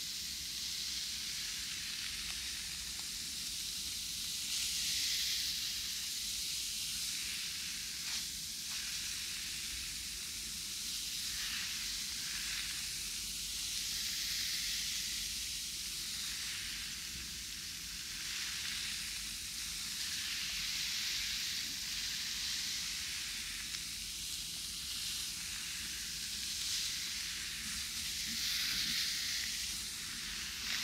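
Soapy foam being wiped with a wad of cloth close to the microphone: a steady fizzing, crackling hiss of bursting bubbles and rubbing cloth that swells and eases every few seconds.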